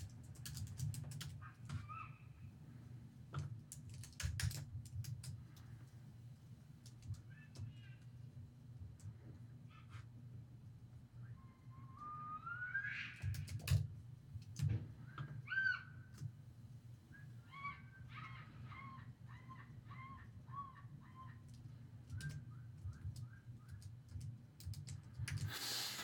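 Computer keyboard clicks and key presses as code is typed and edited, over a steady low hum. In the second half a bird calls: one rising call, then runs of short repeated notes.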